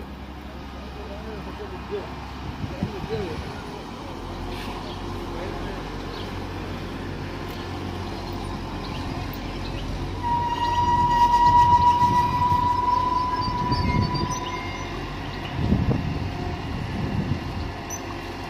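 Class 711 diesel multiple unit running into the station and drawing to a stop, with a steady low rumble that grows louder about ten seconds in. A single steady high squeal rings for about four seconds as it slows.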